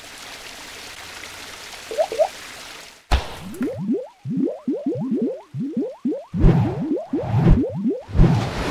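Animated logo sound effects: a steady hiss for about three seconds, then a quick run of short, rising, squishy bloops punctuated by a few low thumps.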